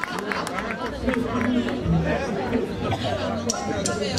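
Voices and crowd chatter, with no music playing.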